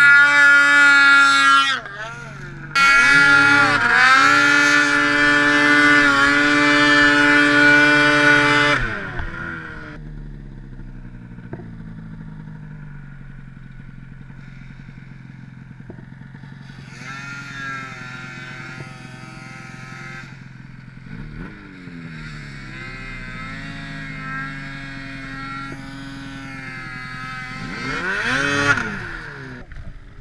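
Snowmobile two-stroke engine revving hard in the first several seconds, its pitch climbing under load with a brief break near two seconds. It then drops to a low idle, with repeated revs partway through and a sharp rev blip near the end.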